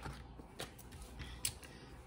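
Quiet room tone with two faint clicks, one about half a second in and one about a second and a half in.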